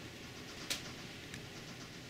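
Quiet room tone: a low, steady hiss with one sharp, faint click about a third of the way in and a softer one later.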